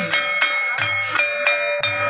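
Live Santali folk dance music: small brass hand cymbals clashing in a steady beat, about three to four strikes a second, over a held keyboard chord.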